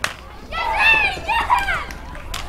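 A single sharp smack at the very start, then a girl's voice calling out loudly in a few high-pitched syllables for about a second and a half, starting about half a second in.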